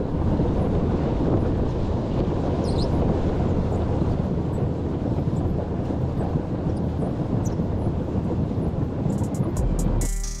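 Wind buffeting a camera microphone: a steady, loud, low rumble with no pitch to it. Music comes in near the end.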